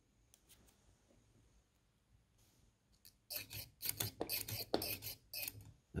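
Near silence at first, then, from about halfway through, a quick irregular run of short scraping rubs.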